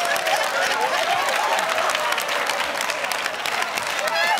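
Studio audience and contestants applauding steadily, with laughter mixed in.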